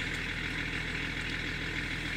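Car engine idling, a steady, even low hum.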